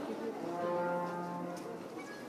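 A brass instrument playing a slow tune in long held notes, each lasting about a second, over faint crowd chatter.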